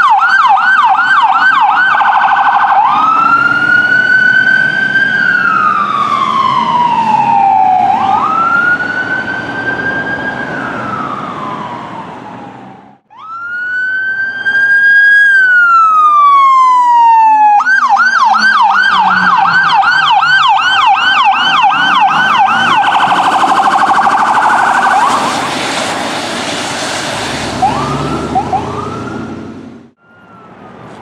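Ambulance electronic siren switching between modes: a fast yelp of about four sweeps a second, then a slow wail rising and falling, then back to yelp. Two short wail passes follow, and the yelp fades out near the end.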